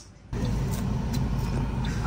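Steady low rumble of a car, heard from inside its cabin, starting a moment in after a brief drop in sound.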